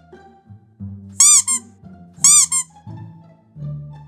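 Low cello-and-pizzicato background music, with two loud high-pitched squeaks laid over it, about a second apart, each a quick warbling run of rising-and-falling chirps.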